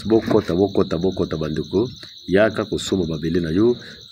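A person talking, with a steady high-pitched cricket trill running underneath.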